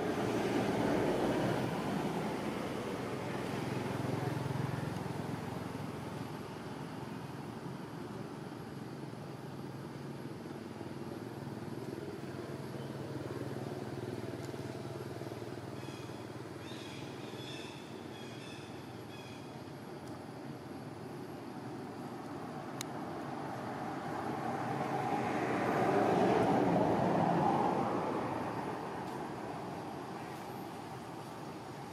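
Background road traffic: the rumble of a passing vehicle swells up near the start and again about 25 seconds in, with a low engine hum between. Faint high chirps come about halfway through.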